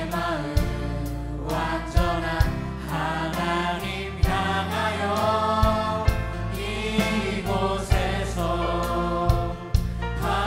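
Mixed church choir of adults and children singing a Korean worship song together, over instrumental accompaniment with a sustained low bass and sharp percussive hits every second or so.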